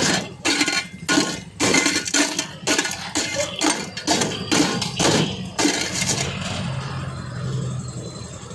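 Block ice being broken up in a stainless steel pot with a metal rod: clinking, crunching strikes about two a second, stopping about six seconds in. A steady low hum follows.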